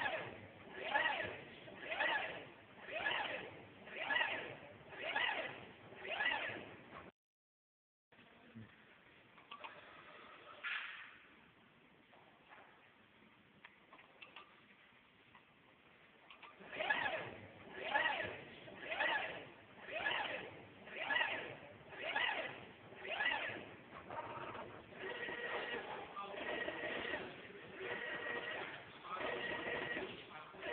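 Induction cooker coil winding machine running, its motor giving a rising-and-falling whine about once a second as the spindle turns the coil holder and copper wire is laid in a spiral. The sound cuts out briefly about seven seconds in, and turns steadier near the end.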